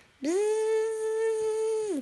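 A high voice holding one long, steady hummed note for under two seconds, sliding up at the start and dropping away at the end, in playful vocalising to a baby.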